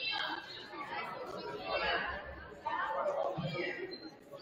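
Indistinct chatter of several people talking, echoing in a school gymnasium.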